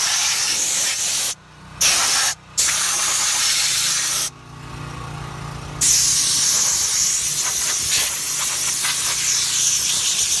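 Compressed-air blow gun blasting in long hissing bursts, blowing dust off car interior trim and leather. The air cuts off sharply three times: briefly twice in the first few seconds, then for about a second and a half near the middle, when only a low hum is left.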